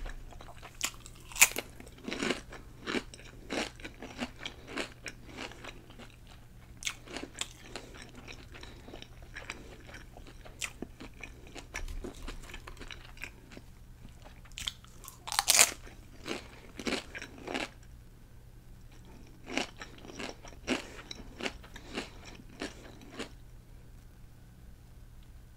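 Close-miked crunching of crisp chips being bitten and chewed: sharp, loud bite crunches about a second and a half in and again about fifteen seconds in, each followed by a run of smaller chewing crunches.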